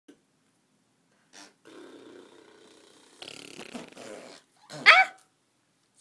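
A young child's voice: soft, scattered noisy sounds, then about five seconds in a single loud, short squeal that sweeps sharply up in pitch.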